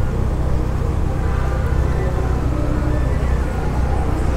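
Steady low hum of a car's engine and tyres on the road, heard from inside the slowly moving car.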